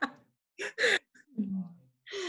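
Soft breathy laughter: two short airy bursts, then a low voiced sound that falls in pitch near the end.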